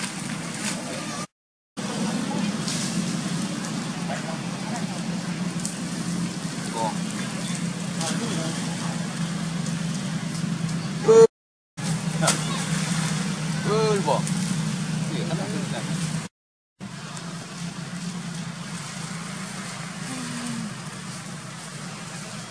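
Macaques giving short squealing calls that rise and fall in pitch, a few at a time, the loudest about eleven seconds in, over a steady low background rush. The sound cuts out completely three times, briefly each time.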